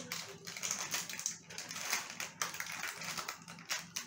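Plastic sweet wrappers crinkling irregularly as they are picked at and torn open by hand.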